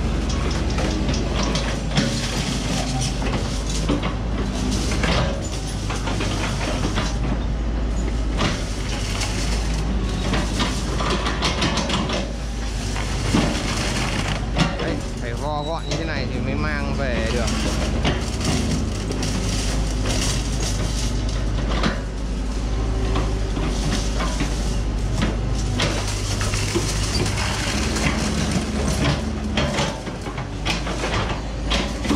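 Hitachi mini excavator running, its bucket repeatedly pounding and pressing a tangle of scrap steel rebar to compact it into a ball. A steady diesel drone runs under irregular metallic knocks and scrapes.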